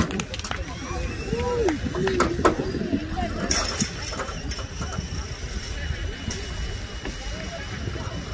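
Shouted voices of players and spectators calling out across a soccer field, unclear at a distance and loudest about two seconds in, over a steady low rumble.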